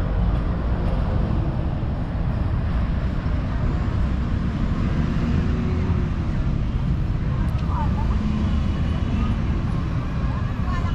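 Steady outdoor city noise: a low, even rumble of road traffic, with faint distant voices.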